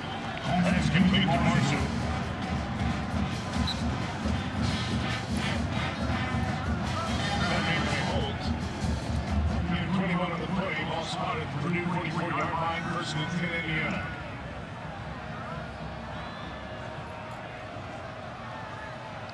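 A man talking over music, with faint crowd noise beneath; the sound drops somewhat quieter about fourteen seconds in.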